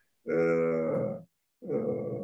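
A man's voice holding a long hesitation sound, an "ehhh" at a steady pitch for about a second, then a second, quieter one near the end.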